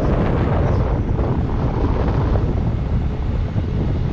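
Wind rushing over the microphone of a camera on an electric unicycle moving at speed, a loud, steady low rumble.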